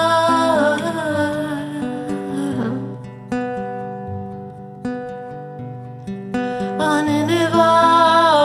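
A woman singing a long held note without words over a fingerpicked classical guitar. About three seconds in, the voice stops and a few single guitar notes ring out. The singing returns near the end.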